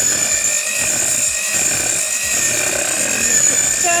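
Electric hand mixer running steadily, its twin beaters whipping cream cheese and butter in a metal bowl, with a steady high motor whine.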